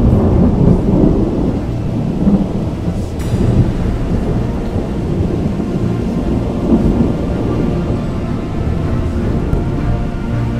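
Thunder: a loud, long rumble that breaks in suddenly and rolls on for several seconds, over background music with held tones.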